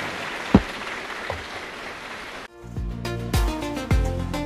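Steady applause in a large assembly hall, with a single thump about half a second in. About two and a half seconds in it cuts off abruptly and background music with a steady beat of deep drum hits takes over.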